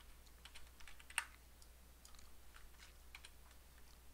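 Faint, irregular clicking of a computer mouse and keyboard, with one sharper click about a second in, over a faint low hum.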